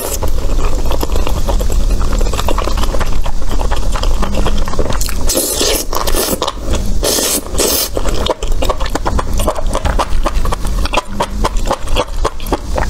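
Close-miked eating of saucy meat-wrapped enoki mushrooms: wet chewing with many quick clicks. There are two louder slurps as a bundle of enoki stems is sucked into the mouth, about five and a half and seven seconds in.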